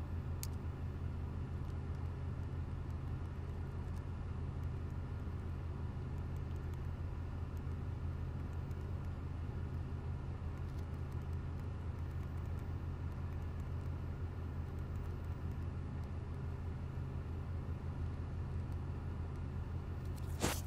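Steady low hum inside a car's cabin with the engine running, unchanging throughout.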